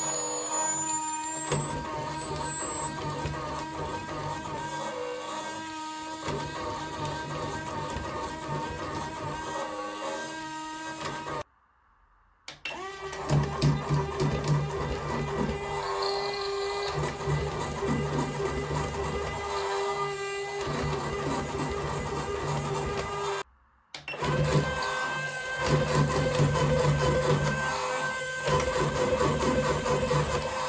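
RoboAlive dragon toy's gear motor and walking mechanism running steadily, overvolted from a bench power supply at 8 V, then 10 V, then 13 V. The motor whine steps higher in pitch after each of two brief cuts as the voltage goes up.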